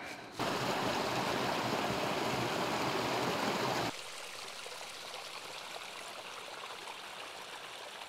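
Small hill stream running over stepped rocks, louder for the first four seconds or so, then dropping suddenly to a quieter, steady flow.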